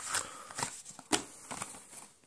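Folded paper and cardboard packing rustling and crinkling as it is drawn out of a card deck box by hand, with about four sharp crackles.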